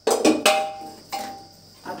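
A metal spoon knocking and scraping against a steel kadai while stirring mutton and potatoes, a few sharp clangs with the pan ringing after them, the loudest at the start and another just past a second in.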